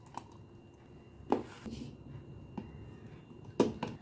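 A few scattered clicks and knocks from a metal lever-release ice-cream scoop and a plastic blender jar as vanilla ice cream is scooped into the jar, the sharpest knock about a second in and two more close together near the end.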